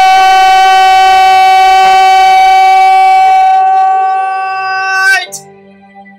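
Male voice singing one long, loud high note, steady in pitch, for about five seconds. It flicks briefly upward and breaks off. Soft backing music carries on underneath and after it.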